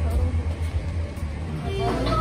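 Street noise with a steady low rumble and faint voices in the background. Near the end it switches to music and chatter.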